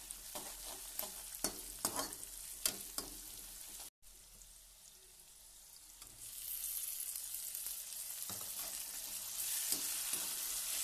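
Onions, chillies and spices frying in oil in a metal kadai, with a perforated metal skimmer scraping and clicking against the pan as it stirs. After a short break in the sound, chopped tomatoes go into the hot oil about six seconds in, and the sizzling grows louder and steadier.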